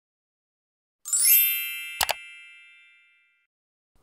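Intro logo sound effect: a chime that sweeps quickly upward into a bright ringing ding about a second in, with a single sharp click a second later, the ring fading away over the next second or so.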